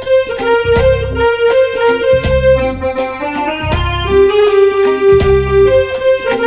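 Yamaha portable keyboard playing a melody of held notes over a beat with deep thumps about every one and a half seconds; one note is held longer in the middle of the phrase.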